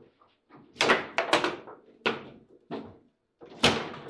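Table football in play: sharp knocks and clacks of the ball being struck by the figures and the rods banging against the table, about six hard hits, with a quick run of three about a second in and a loud one near the end.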